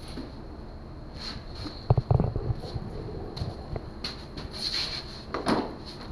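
Clatter of bicycle parts and tools being handled during assembly: a quick cluster of knocks about two seconds in, then scattered lighter clicks and a short rustle.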